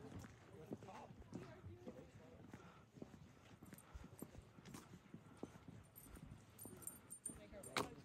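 Faint voices of people talking at a distance, with scattered light taps and clicks of footsteps on rock; one sharper click near the end.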